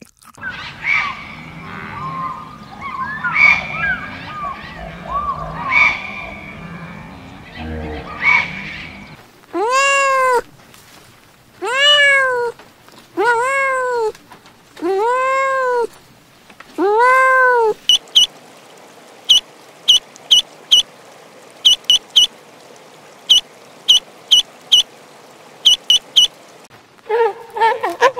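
Kittens meowing: five drawn-out meows of about a second each, every one rising and then falling in pitch. Before them there is a stretch of jumbled, indistinct sound, and after them a run of very short, high chirps in twos and threes.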